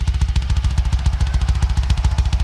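Double bass drum roll on a rock drum kit: a fast, even stream of kick drum strokes played with two pedals, with little else in the middle of the mix.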